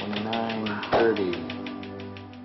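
Transcranial magnetic stimulation (TMS) coil firing a rapid, even train of clicks at a man's head, over his drawn-out voice, with background music.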